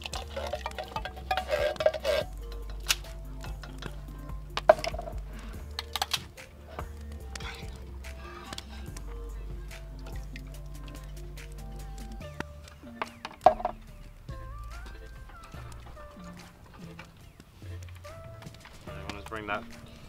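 Background music with a steady bass line over canned diced tomatoes pouring into a cast-iron camp oven. A spoon clinks against the tin can several times.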